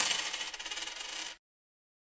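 The fading end of the show's intro sound effect: a bright, rapidly rattling shimmer that dies away and cuts off about a second and a half in.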